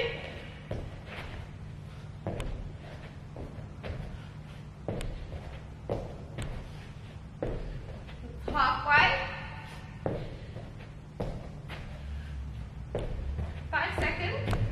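Irregular thumps of a person doing burpees, hands and feet landing on the floor about once a second. A short burst of voice comes about nine seconds in.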